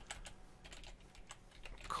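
Typing on a computer keyboard: a scattering of faint, irregular keystrokes.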